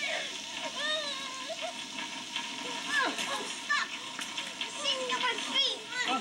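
Steady rain, with a child's frightened cries and whimpers in short rising and falling wails over it.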